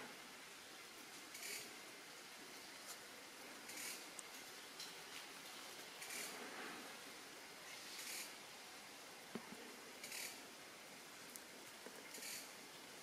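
Faint steady hiss with short, soft rustles every one to two seconds.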